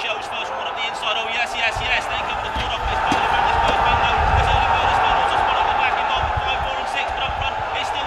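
Spectators shouting and calling out excitedly during a greyhound race, swelling into a louder steady din about three seconds in, over a fluctuating low rumble.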